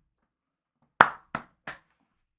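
Three sharp hand claps about a third of a second apart, the first the loudest.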